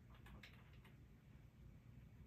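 Near silence with a few faint clicks of handheld calculator keys being pressed, mostly in the first second, over a low room hum.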